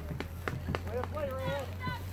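Several raised voices of players and spectators calling out across a lacrosse field, with a few sharp clicks in between.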